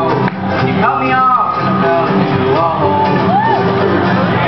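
Live acoustic pop performance: strummed acoustic guitars and a ukulele with male lead singing and backing voices.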